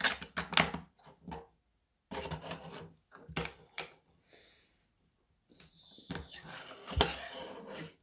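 Plastic Lego bricks clicking and knocking as they are handled and pressed together on a table: irregular clicks with short pauses, and a louder knock about seven seconds in.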